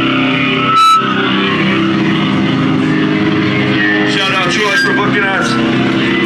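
Live rock band's amplified electric guitars and bass holding a steady, droning chord at full volume, with a short loud hit about a second in. Voices shouting over the drone from about four seconds in.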